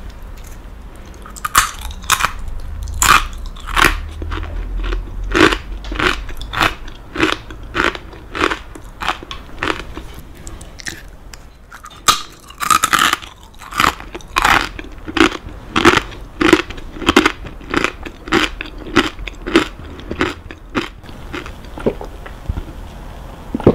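Crunchy kakinotane rice cracker pieces being bitten and chewed, a steady run of sharp crunches about two a second, with a quicker cluster of crunches about halfway through.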